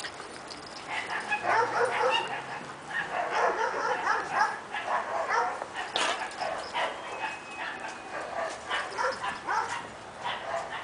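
Two miniature dachshund puppies play-fighting: a rapid, dense run of short yips and barks that starts about a second in and goes on throughout, busiest in the first half. It is rough play, not a real fight.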